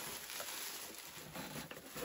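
Rustling and crinkling of a cardboard shipping box and the plastic packing bag being pulled out of it.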